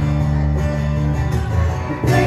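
Acoustic guitar strummed with no singing, chords ringing; the chord changes a little over a second in.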